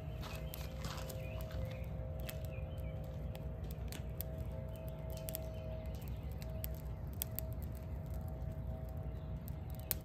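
Leaves and twigs burning in a small perforated metal camp stove, crackling with sharp, irregular pops over a steady low hum.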